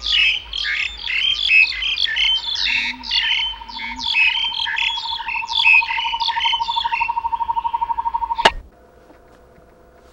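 Forest birds chirping densely, with a long, steady, rapid trill starting about two seconds in under the chirps. Near the end everything cuts off suddenly with a click, leaving only a faint hum.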